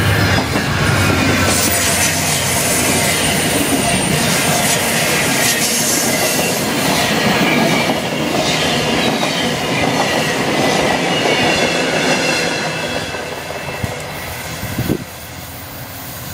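Amtrak Cascades Talgo passenger train, hauled by a P42 diesel locomotive, passing at speed a few metres away: loud rumbling and clatter of wheels on the rails with thin high whines from the wheels, the noise easing off over the last few seconds as the end of the train goes by.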